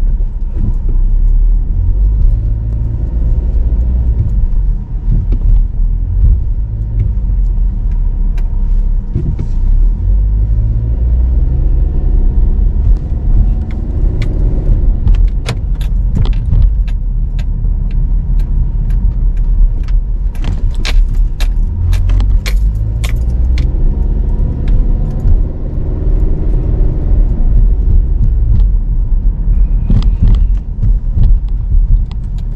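A car being driven, heard from inside the cabin: a steady low rumble of engine and road noise, with the engine note rising and falling three times as the car pulls away and speeds up. A quick run of small clicks or rattles comes in the middle.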